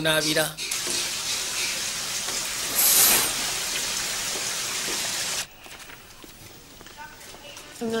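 Bath tap running into a tub: a steady hiss of water, with a brief louder rush about three seconds in. The water sound cuts off suddenly about five and a half seconds in.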